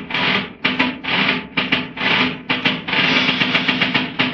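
Instrumental interlude of a 1929 78 rpm dance-orchestra recording: rhythmic accented string chords, about two strong beats a second, with the dull, narrow sound of an old shellac record.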